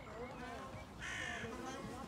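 A crow cawing once, a harsh call of about half a second starting about a second in, over faint distant voices.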